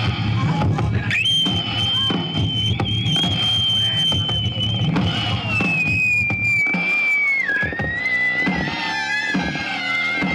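Live experimental electronic improvisation: a dense, noisy electronic texture over low pulsing. A high steady tone comes in about a second in, holds, then slides down in steps toward the end. The low pulsing drops away a little past the middle.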